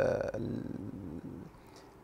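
A man's drawn-out, creaky hesitation sound, an 'ehh' in vocal fry, fading out over about a second and a half mid-sentence, then a short pause.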